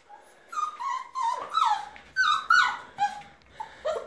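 Bernese mountain dog puppy whining, a quick run of short high whines, most of them falling in pitch, several a second.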